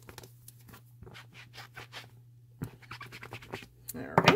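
Rubber stamp on a clear acrylic block being scrubbed on a Stampin' Chamois cleaning pad to wipe off the ink: quiet, scratchy rubbing in short, irregular strokes.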